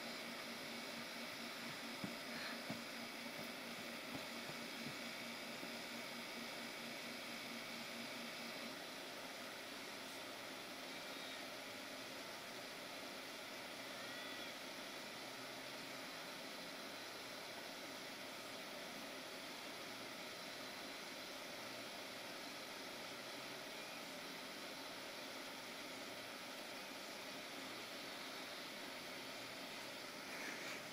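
Faint steady hiss of outdoor background, with a few soft knocks in the first five seconds.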